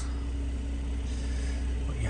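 Steady low hum of the Mercedes-AMG C43's 3.0-litre V6 idling, heard from inside the cabin, with a faint higher tone held over it.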